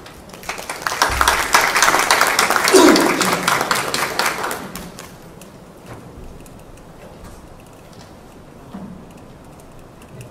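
Audience applauding, a dense patter of clapping that swells about a second in and dies away by about five seconds.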